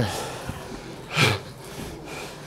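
A man's single short, forceful breathy exhale, like a grunt of effort, about a second in, over quiet gym room tone.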